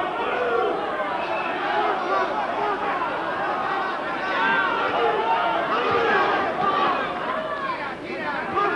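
Boxing arena crowd: many voices shouting and chattering at once in a steady roar through the whole stretch.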